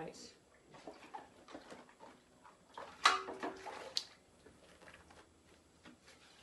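Silicone baking mat being laid out and smoothed flat on a kitchen worktop: scattered soft knocks and rustles, with one louder rustle about three seconds in.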